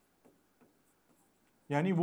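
A few faint taps and light scrapes of a pen writing by hand on an interactive display board, followed near the end by a man starting to speak.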